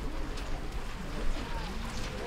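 A pigeon cooing amid the chatter of a crowd of children.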